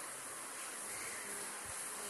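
Steady background hiss of room noise, with a faint low thump late on.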